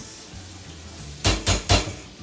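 Three quick knocks of kitchenware, a dish or utensil striking a pot or bowl, about a quarter second apart, over a low steady kitchen hum.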